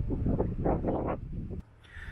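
Handling noise as the torch's threaded plastic end cap is unscrewed and set down, with a few short scrapes over a low rumble, stopping about one and a half seconds in.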